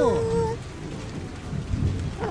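Steady heavy rain falling, with a low rumble of thunder swelling near the end.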